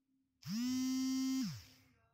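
A single steady pitched tone, held for about a second, gliding up into pitch at its start and sliding down as it cuts off.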